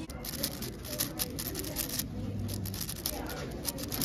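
Many light, rapid plastic clicks from a 6x6 speedcube being handled and turned, over background voices in a busy hall.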